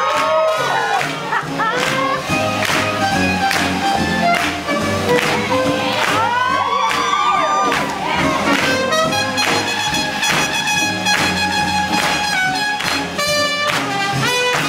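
Live swing jazz band with brass playing an up-tempo tune over a steady beat, with long held horn notes in the second half. The crowd of onlookers cheers and claps along.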